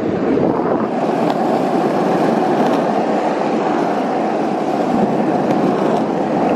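Small plastic cruiser skateboard's wheels rolling over asphalt: a steady rumble.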